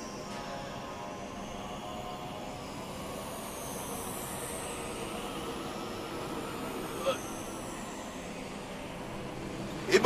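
Steady synthesized background score: a sustained drone with slowly sweeping high tones that rise and fall, and a brief tap about seven seconds in.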